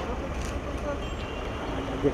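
A car engine running close by, a low steady rumble, with faint voices of people nearby.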